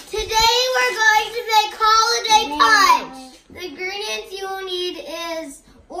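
A young girl singing in a high voice, holding wavering notes, with a sliding downward note about halfway through.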